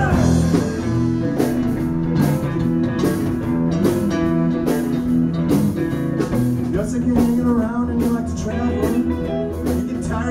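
A live band playing electric guitars over a steady beat, a rock-and-roll number played on stage.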